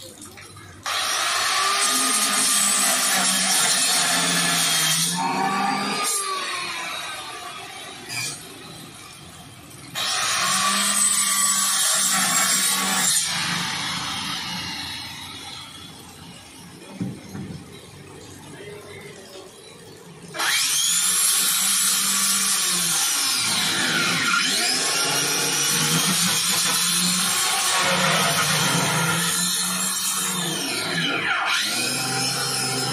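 Corded electric angle grinder cutting into a plastic jerrycan, started three times. Each run comes in abruptly, its pitch dipping and rising as the disc bites into the plastic; the first two wind down slowly after release.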